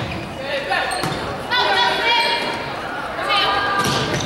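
Volleyball rally in a gym: sharp smacks of hands on the ball, one about a second in and another near the end, with players' high-pitched shouts and calls between them.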